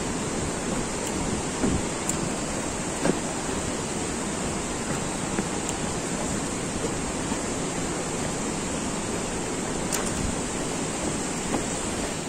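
Steady rush of a fast mountain river in whitewater rapids below a suspension bridge, with a few faint short knocks scattered through it.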